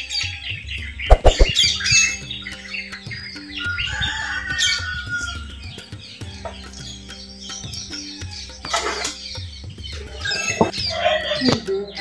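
Small birds chirping over steady background music, with a loud knock about a second in and a few fainter knocks later.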